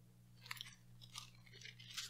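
Faint rustling and crinkling of paper pages being handled at a pulpit: several short, soft crackles over a low steady hum.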